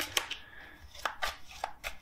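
Tarot cards being dealt from the deck onto a hard tabletop: a handful of light, irregular clicks and taps as cards are drawn and laid down.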